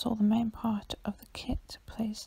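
Soft, close speech in a woman's voice, the words not clear.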